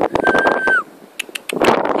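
A small dog whining once, a thin high note held for about half a second that drops away at the end, followed by scattered clicks and rustling noise.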